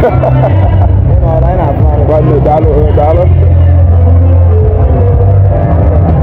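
Men talking close to the microphone over loud music with a heavy bass line whose low notes step from pitch to pitch; the talking stops about three seconds in while the bass carries on.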